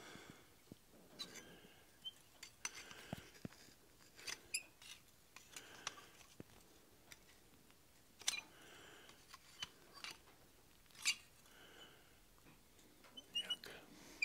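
Faint, scattered clicks and small metal taps of steel scrolling pliers gripping and bending the scroll at the tip of a thin tapered steel rod resting on an anvil. The clicks come irregularly, a little louder around three-quarters of the way through.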